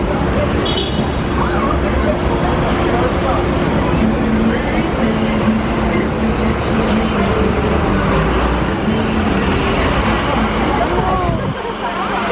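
Busy city street traffic noise: a heavy vehicle's engine running nearby with a steady low hum, under background voices. The low rumble drops away just before the end.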